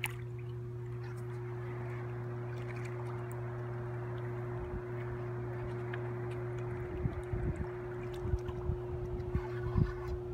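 A steady low hum over a soft rushing hiss of river water, with a run of dull low bumps from about seven seconds in.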